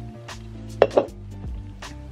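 Soft background music, with a couple of short clinks and knocks about a second in as an aluminium drink can is set down on the desk.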